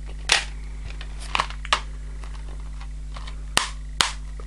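Plastic Blu-ray case being handled: a few sharp plastic clicks, the loudest near the end as the case is snapped shut.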